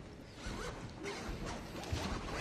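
Handling noise as the camera is grabbed and moved: irregular rustling and scraping of fabric and hard parts rubbing close to the microphone, with a few sharp little ticks and a zip-like rasp.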